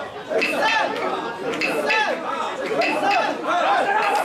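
Many mikoshi bearers chanting and shouting together as they carry the shrine, a dense mass of overlapping voices rising and falling in rhythmic surges.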